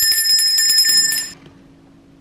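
A small metal hand bell shaken rapidly, its clapper striking many times a second in a bright, high ringing that cuts off suddenly just over a second in.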